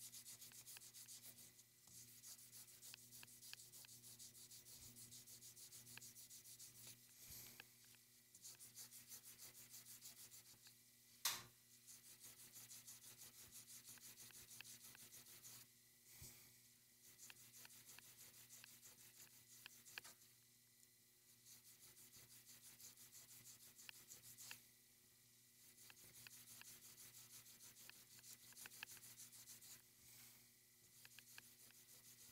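Faint, rapid hand rubbing of a small cloisonné enamel pendant with a folded blue abrasive pad, in stretches broken by brief pauses: hand-polishing the enamel surface. One sharp click, about eleven seconds in, is the loudest sound.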